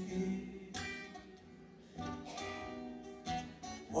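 Acoustic guitar strummed in an instrumental gap between sung lines: three chords, about a second and a quarter apart, each left to ring.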